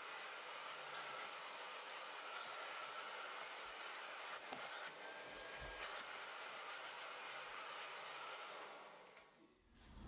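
Faint, steady hiss of the Miele Blizzard CX1 cylinder vacuum cleaner running as its floor head picks up oats from a hard floor; it cuts out about a second before the end.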